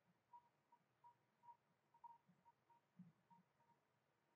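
Near silence: room tone, with about a dozen faint, short beeps at one high pitch, unevenly spaced.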